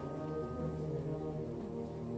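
Symphonic wind band playing low, sustained chords, with the brass to the fore.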